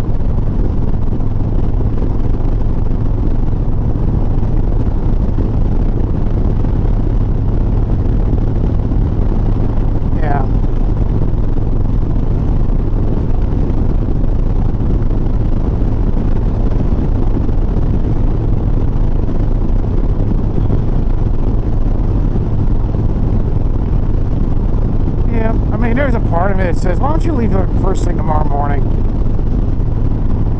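Harley-Davidson Sport Glide's V-twin engine running at a steady highway cruising speed: a constant low drone under an even rush of road noise.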